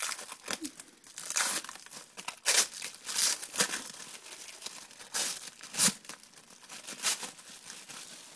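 Plastic cling wrap crinkling and tearing as hands pull it off a package, in irregular bursts of crackling.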